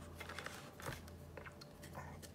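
Faint handling of cardboard and plastic packaging: light rustles and small ticks as the box insert and wrapped board are touched, over a low steady hum.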